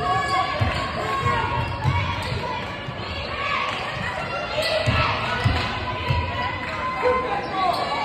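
Basketball bouncing on a hardwood gym floor during play, a string of irregular thuds in a large, echoing gym.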